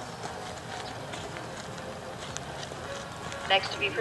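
A grey horse's hooves clopping on a hard path as it is led in hand at a walk, as irregular short knocks over background crowd chatter. A public-address voice starts near the end.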